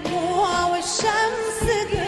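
Arabic pop song: a voice sings an ornamented melody that bends up and down, over a full band with drum hits about once a second.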